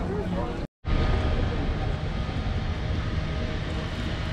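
Steady low outdoor rumble with faint voices, broken by a brief dropout to silence just under a second in.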